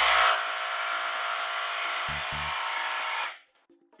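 Milwaukee M18 FBJS cordless brushless jigsaw triggered in the air without cutting, giving a steady motor and blade-drive whir that cuts off about three and a half seconds in.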